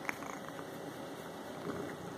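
Kitten purring steadily as its chin and head are scratched, with one short click just after the start.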